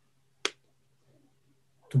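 A single short, sharp click about half a second in, over a faint steady low hum.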